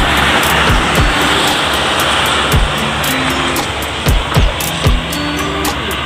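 Background music with held bass notes and a few deep drum thumps, over a steady rush of road traffic that is strongest at the start and then eases.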